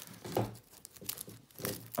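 A braided rope's spliced loop being fed around and through a three-strand twisted rope by hand: a run of small crackling rustles as rope rubs against rope and fingers.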